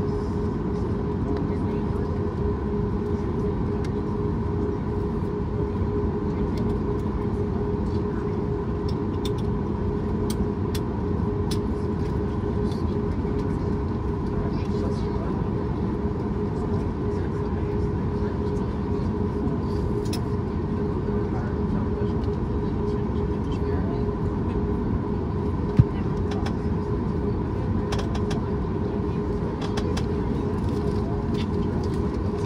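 Steady engine noise of a Boeing 737 MAX 8's CFM LEAP-1B turbofans at taxi thrust, heard inside the cabin from a window seat behind the wing, with a constant hum of two steady tones. One sharp click comes near the end.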